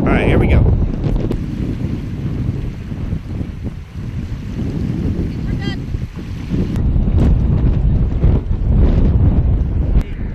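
Wind buffeting the microphone: a loud, low rumble that swells and eases in gusts.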